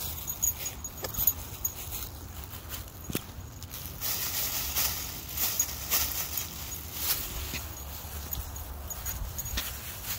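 Plastic dog-waste bag crinkling and rustling as a gloved hand scoops dog poop off the grass, loudest around the middle, with scattered sharp clicks and a steady low rumble underneath.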